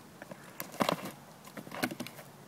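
Plastic milk crate sliding and bumping down a dirt-and-grass slope with a rider in it: a few short knocks and scuffs, the loudest just under a second in and again near the end.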